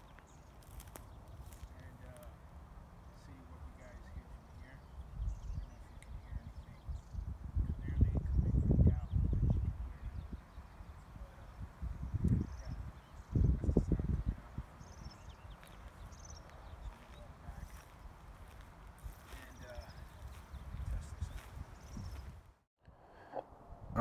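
Wind buffeting a phone's built-in microphone, with low rumbling gusts about five to ten seconds in and again around twelve to fourteen seconds, over a faint, distant man's voice.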